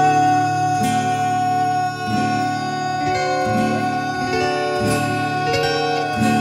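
Two acoustic guitars playing a song together, strummed chords changing every second or so, with one long high note held over them through most of it.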